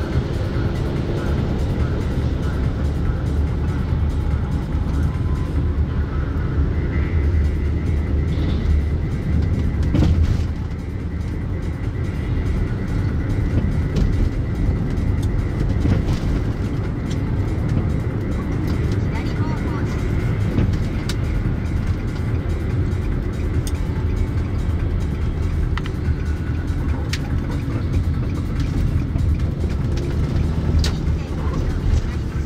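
Cabin noise of a car driving on town roads: a steady low rumble of engine and tyres.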